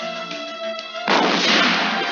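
Background music, then about a second in a cannon-shot sound effect: one sudden loud blast that dies away over about a second.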